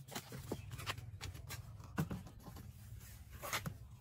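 A trowel stirring and scraping wet cement mix in a plastic basin: irregular wet scrapes and rubs, with a sharper knock about halfway through.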